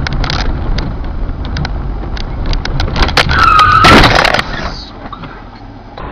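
Car cabin engine and road noise picked up by a dashcam, with scattered sharp clicks. About three seconds in comes the loudest sound, a squeal held for about a second over a burst of noise, after which the noise drops away.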